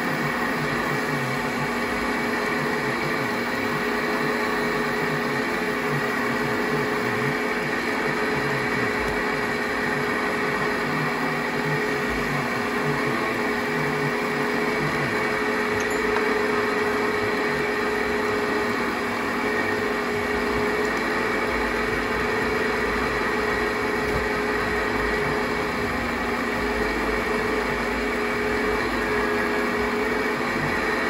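Metal lathe running at a steady speed: an even motor hum with a few held tones, as a spinning chuck-held part is polished by hand with an abrasive pad.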